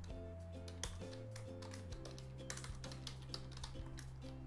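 Computer keyboard typing: a run of quick keystroke clicks, most of them in the second half, over soft background music with steady low sustained notes.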